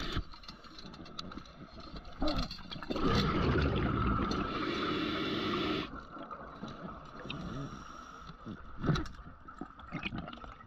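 Underwater: a scuba diver's exhaled bubbles from the regulator rush out for about three seconds in the middle, with a few sharp knocks before and after.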